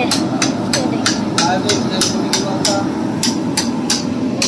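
Boondi being made: a ladle knocking on a metal perforated skimmer held over a kadhai of hot oil, in a fast steady beat of about three taps a second, knocking gram-flour batter through the holes into the oil.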